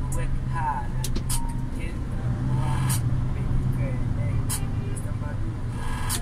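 Truck engine running steadily under load, heard from inside the cab while driving, with voices or vocals in the background and a few sharp clicks.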